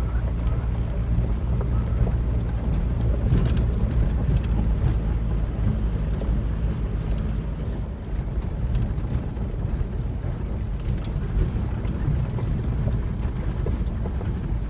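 A 2006 VW diesel Beetle driving along a gravel dirt road, heard from inside the cabin: a steady low engine and road rumble with occasional faint clicks from the gravel.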